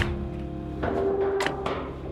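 Background music: held notes over occasional drum hits.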